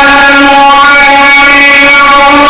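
A man's Quran recitation in tajweed style, his voice holding one long, nearly steady note through a handheld microphone. The recording is very loud.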